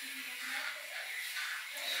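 Battery-powered facial cleansing brush running with a steady motor buzz as its spinning head works over the face.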